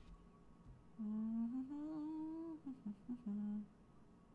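A woman humming softly to herself. A slowly rising note lasts about a second and a half, then a few short notes follow, then a lower held note stops just before the end.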